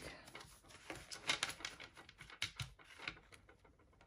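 A thick stack of paper banknotes (five-dollar bills) being gathered, rustled and squared in the hands: an irregular run of soft flicks and taps.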